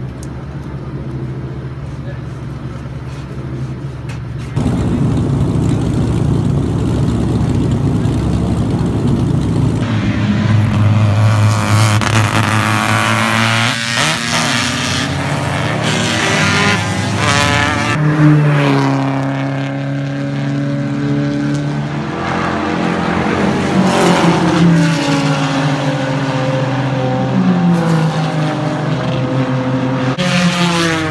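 Race car engines at a circuit: a steady engine hum at first, then, after a sudden cut about a sixth of the way in, cars accelerating on track, their engine pitch climbing and dropping back again and again as they shift up through the gears.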